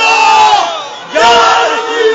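A man crying out in two long, drawn-out shouts of 'Ya Rasool Allah', the second starting just over a second in, with crowd voices.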